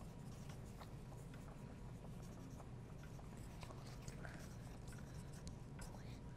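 Several wooden pencils scratching faintly on paper, with light scattered ticks of lead on the sheets.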